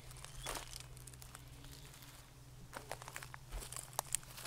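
Faint rustling and a few soft crunches from movement near the microphone, over a low steady hum.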